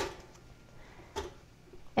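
A single short click about halfway through as bread is loaded into an electric pop-up toaster, against faint room tone.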